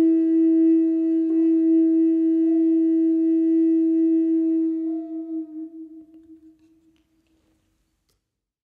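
Native American flute holding one long, steady closing note, which fades out about five seconds in.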